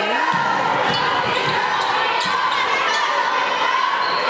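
A basketball being dribbled on a hardwood court, a few separate bounces, over the steady murmur of voices from the crowd in a gymnasium.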